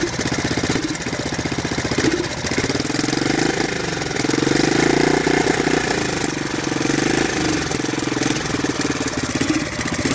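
1985 Honda ATC 250SX three-wheeler's single-cylinder four-stroke engine running, its revs rising and falling several times.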